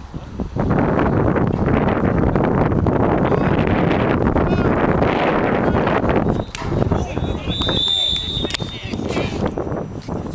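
Heavy wind buffeting the microphone, mixed with shouting voices, for about the first six seconds. Then a single whistle blast of about a second, typical of a referee's whistle stopping play.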